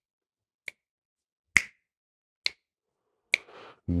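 Finger snaps keeping a steady quarter-note beat for a 3/4-time rhythm exercise: four crisp snaps a little under a second apart, the first faint.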